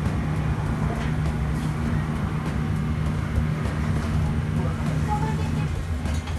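Steady low hum of a ramen shop kitchen, the equipment giving a constant low tone over an even rushing noise, which cuts out near the end.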